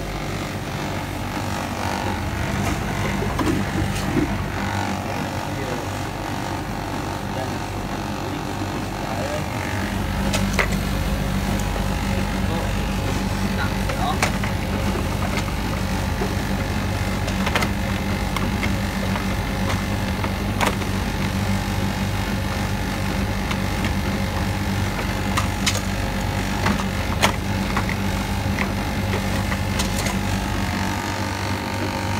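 Bosch Classixx WTL6003GB condenser tumble dryer running: a steady motor and drum hum with scattered light clicks. About ten seconds in, the low hum steps up and grows fuller.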